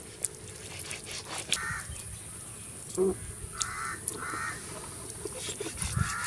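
Bird cawing three times, short harsh calls a second or two apart, over light scraping and clicking as a fish is scaled by hand on a stone.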